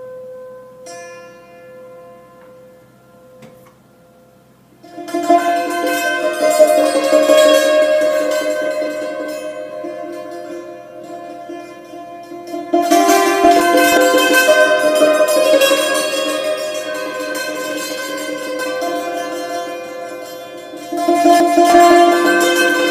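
Solo yanggeum, the Korean hammered dulcimer with metal strings: a few sparse ringing notes, then, about five seconds in, a loud, dense stream of rapid notes that swells and fades. The stream surges again around the middle and just before the end.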